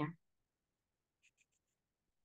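The last syllable of a man's speech, then near silence: room tone, with four very faint quick ticks a little past halfway through.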